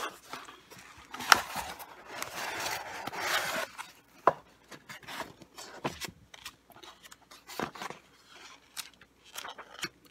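A cardboard box being opened and unpacked by hand. A sharp click about a second in, then a few seconds of cardboard and paper rustling and sliding, followed by scattered light taps and rustles as a paper manual is lifted out.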